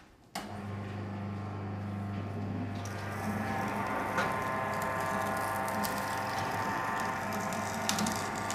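Electric sugarcane juice machine starting suddenly and running with a steady hum. From about three seconds in a rougher crackle joins it as the cane stalk is crushed between the rollers.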